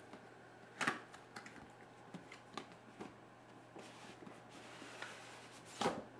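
Small cardboard graphics-card retail box being handled and opened by hand: a few light knocks and scrapes of cardboard, one about a second in and the loudest just before the end.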